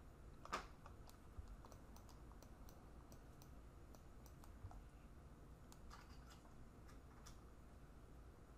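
Faint, scattered clicks of a computer mouse and keyboard, one a little louder about half a second in, over near-silent room tone.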